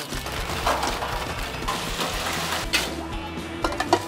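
Potato wedges dropped into a commercial deep fryer, the hot oil sizzling steadily, with a few sharp clicks near the end. Background music plays under it.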